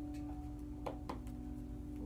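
Quiet background music holding a steady tone, with two light clicks about a second in from a deck of cards being handled and shuffled.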